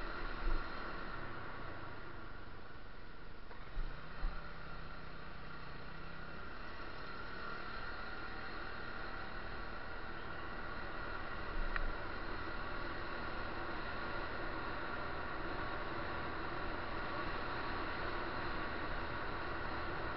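Steady, muffled running noise of a moving vehicle picked up by the camera riding on it, a constant drone with faint whining tones, and a few brief knocks about half a second in, around four seconds and near twelve seconds.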